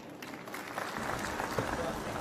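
Audience applauding, a grainy patter that grows steadily louder.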